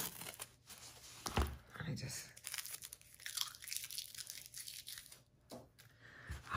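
Faint rustling and crinkling as a rolled, soft-backed diamond painting canvas and the tape holding it are handled and peeled, with scattered small clicks and a soft knock about one and a half seconds in.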